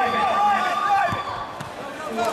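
Voices shouting in a gymnasium during a wrestling bout, in short repeated calls, with a single thud a little over a second in.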